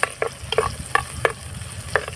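Cherry tomatoes sizzling in hot oil in a clay pot as they are stirred with a metal spatula, which clicks against the pot about seven or eight times at irregular short intervals.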